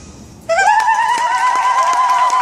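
About half a second in, after the music has stopped, an audience member gives a long, high, trilling ululation (zaghareet) that rises and then holds its pitch. Scattered claps of applause begin under it.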